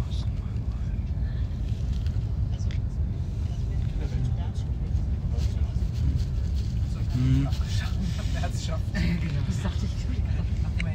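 Steady low rumble of an ICE high-speed train heard from inside the passenger cabin while travelling at speed, with a few brief, indistinct voices near the end.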